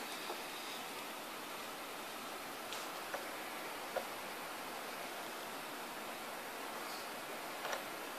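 Faint steady hiss of room tone, with a few soft ticks scattered through it, around three and four seconds in and again near the end.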